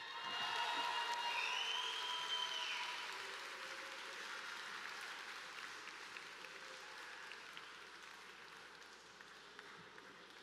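Audience applauding after a speech, with a high rising-and-falling cheer near the start. The applause swells within the first second and slowly dies away over the following seconds.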